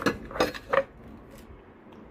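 A few brief clinks and knocks of kitchen containers and utensils being handled, as the chicken-powder seasoning is readied to go into the eggs.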